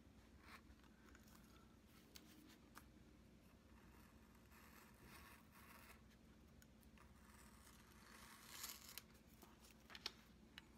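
Faint scratching of a pen-style hobby knife blade cutting through a paper template on a cutting mat, with a slightly louder rasp near the end.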